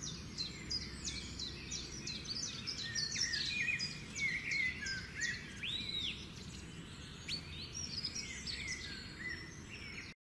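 Several birds chirping and singing in quick, overlapping short calls, busiest in the first half, over a faint steady low rumble.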